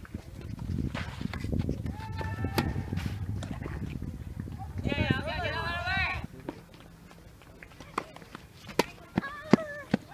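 High shouted calls from tennis players, around two seconds and five seconds in, over a low rumble that cuts off suddenly after about six seconds. Near the end come several sharp knocks, a tennis ball struck or bounced.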